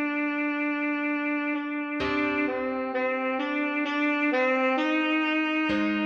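Alto saxophone playing a slow melody at half speed. It holds one long note, then plays a run of shorter notes from about two seconds in.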